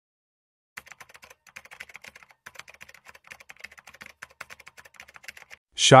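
Faint, rapid, irregular clicking that starts just under a second in and runs for about five seconds.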